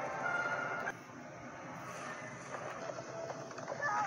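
Soundtrack of an animated film heard through a screen's speaker: a few held music notes end about a second in, followed by a steady noisy rush without clear tones.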